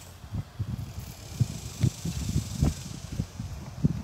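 Wind buffeting the microphone: low rumbling broken by about five soft thumps, over a faint steady high hiss.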